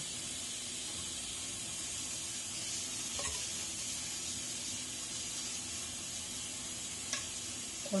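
Steady hiss with a faint, brief knock about three seconds in and a short click near the end.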